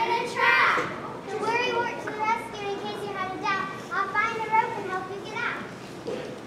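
Children's voices speaking stage lines: several short high-pitched phrases with brief pauses, the words unclear.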